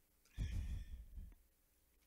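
A man's sigh, a breathy exhale of about a second straight into a handheld microphone, with the breath buffeting the mic and adding a low rumble.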